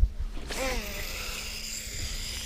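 Shimano Tranx baitcasting reel being cranked on the retrieve after a cast: a steady mechanical whir with a high whine of spinning gears, starting about half a second in.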